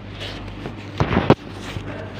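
A brief, loud rough scrape of a hand handling the phone right at its microphone, about a second in. It lasts about a third of a second and ends in a sharp knock, over a steady low hum.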